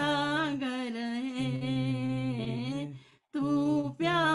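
A woman singing a slow Hindi song, unaccompanied, in long held notes with a wavering pitch, over a steady low hum. The singing breaks off briefly about three seconds in, then picks up again.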